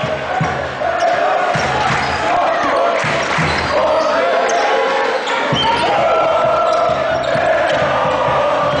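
Basketball being dribbled on a hardwood court, repeated low thuds about two a second, over the steady din of a large arena crowd's voices.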